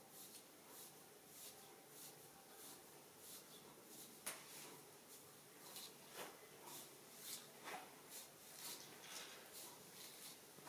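Faint, repeated scratching strokes through hair as a wooden wide-tooth comb and fingertips work the scalp, about one to two strokes a second. There is a single sharp click about four seconds in.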